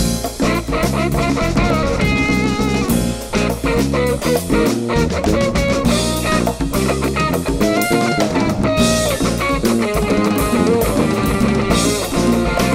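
Funk band playing an instrumental passage live: electric guitars over a drum kit beat, with a melodic line running above.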